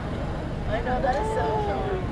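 Street ambience: a steady low rumble of traffic with people's voices nearby, one voice drawn out and falling in pitch about a second in.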